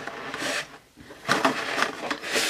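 Rustling and scraping of a collector box's clear plastic insert being handled, in a few short irregular strokes with a brief lull in the middle.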